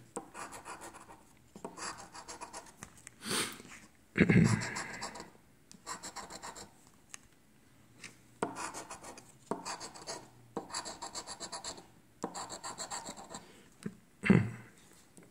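A large coin scratching the coating off a lottery scratch-off ticket in several quick bursts of rapid strokes with short pauses between. There is a brief louder noise about four seconds in.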